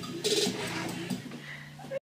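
People laughing in short repeated bursts, loudest about a quarter second in, over a steady low hum.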